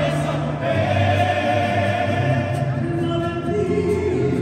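A mariachi band of violins, guitars, harp and trumpets playing while a woman sings into a microphone.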